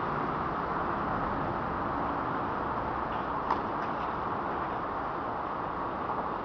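Steady hum of road traffic, with a single sharp knock about three and a half seconds in.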